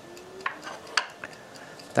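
A few sharp clicks of backgammon checkers and dice on the board during play, two of them distinct, about half a second and a second in.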